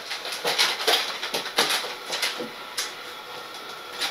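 Soft, scattered clicks and rustles of handling, about a dozen in the first half, thinning out after that.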